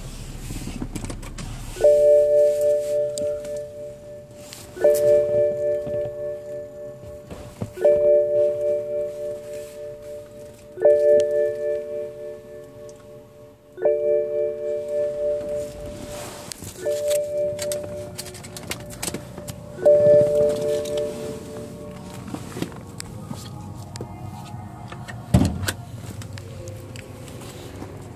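Car warning chime sounding seven times, about every three seconds, each a soft bell-like tone that dies away before the next. A single thump near the end.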